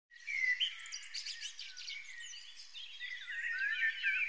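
Birds chirping and twittering: many quick, overlapping chirps and whistled glides, loudest just after the start.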